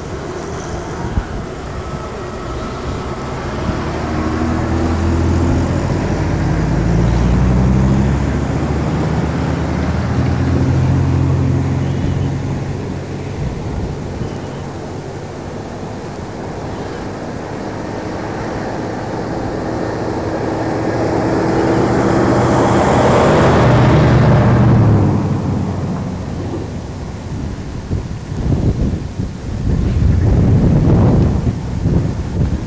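Motor vehicles passing: an engine hum that swells and fades twice with drifting pitch, the second pass bringing a rush of tyre noise that peaks a few seconds before the end.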